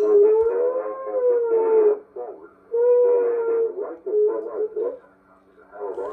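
Reception from a 1920s Atwater Kent Model 10 TRF radio receiver's loudspeaker while its volume controls are turned. A thin, muffled sound with a wavering whistle-like tone that rises and falls, then holds steady, over faint broadcast voices, fading out twice.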